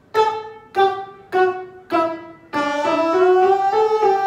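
A man singing a breath-control exercise: four short, cleanly stopped notes, each a little lower than the last, then a long smooth note sliding up and back down that starts about two and a half seconds in.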